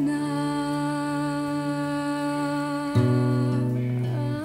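Slow, sad song with a long held note over sustained accompaniment, changing to a lower chord about three seconds in.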